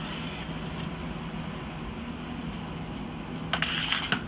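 Steady low machine hum of a Kodak NexPress digital production press standing open in pending mode. Near the end come a few sharp knocks, as a removed developer station is handled and set down.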